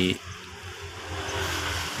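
A steady rushing noise that grows louder over the couple of seconds, over a low hum.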